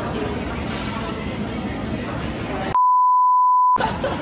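Restaurant chatter and clatter, cut near the end by a one-second steady censor bleep that replaces all other sound, as if to mask a word.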